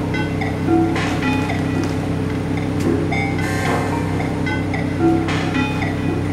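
Electronic synthesizer music: a steady low drone with short bleeping notes scattered over it and a brief hissy swish about halfway through.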